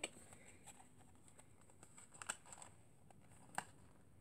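Near silence with a few faint clicks and taps from a small cardboard tea box being handled; the sharpest clicks come a little past two seconds and about three and a half seconds in.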